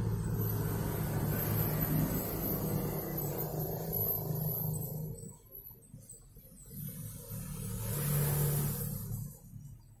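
A low engine-like hum that fades away about halfway through, swells again for a second or two near the end, then dies away.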